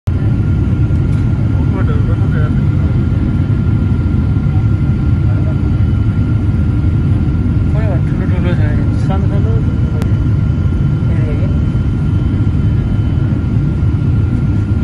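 Airliner cabin noise on the landing approach, heard from a window seat beside the engine: a loud, steady low roar of the jet engines and airflow, with a steady high whine above it. Faint voices come through at times.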